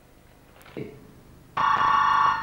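A telephone ringing: one loud, steady ring starts about one and a half seconds in and is still sounding at the end.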